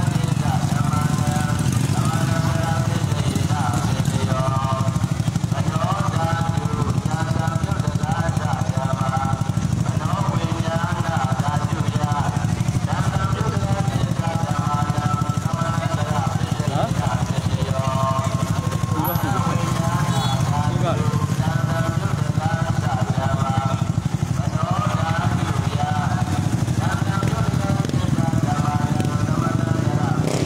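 A motorcycle engine idling steadily close by, under the voices of a crowd calling and talking in the street.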